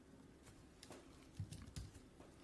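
Faint typing on a computer keyboard, a handful of separate keystrokes.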